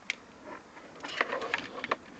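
Hands handling a hard plastic toy car seat and its strap: one sharp click just after the start, then about a second of quick clicks, scrapes and rustling in the second half.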